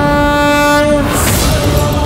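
Dramatic TV background score: a single held, horn-like note that stops about a second in, then a short rushing swish as the music carries on.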